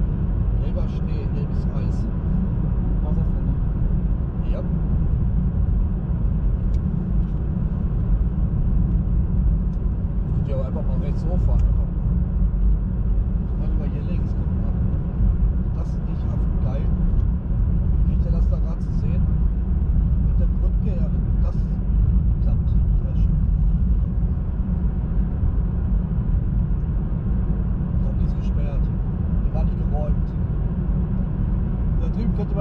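Steady low road and tyre rumble inside a moving car's cabin. Faint talk comes and goes over it.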